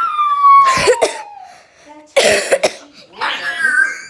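A person coughing: two harsh coughs, about one and two seconds in, after a high-pitched voice that slides down in pitch at the start.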